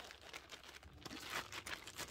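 Faint, irregular crinkling of clear plastic packaging being handled.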